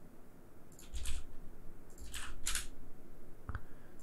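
Faint desk noises at a computer: two pairs of short scuffs about one and two seconds in, and a single mouse click near the end.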